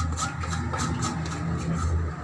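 Fingers rubbing and scraping spice powder off a stainless-steel plate into a steel bowl, soft irregular scrapes over a steady low hum.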